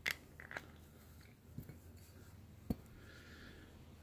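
A few faint, short clicks and taps, the sharpest about two-thirds of the way through, otherwise quiet room tone.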